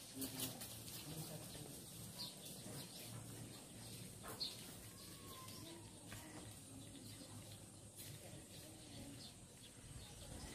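Faint bird chirps, short high calls scattered every second or so over a low steady background.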